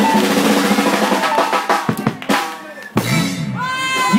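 Live band music ending on the drum kit: after a stretch of full band sound, a few separate loud drum hits close the song. A voice starts near the end.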